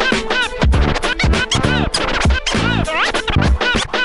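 DJ scratching a vinyl record on a turntable over a hip hop beat: many quick scratches, each a short rising or falling sweep in pitch, cut in and out in fast succession over a steady bass-heavy beat.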